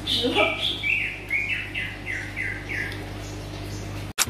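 Baby monkey giving a quick string of about eight high-pitched squeaky calls, each sliding down in pitch, the first one sweeping lower than the rest.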